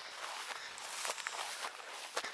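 Footsteps through tall dry grass, the stalks rustling and swishing with each step.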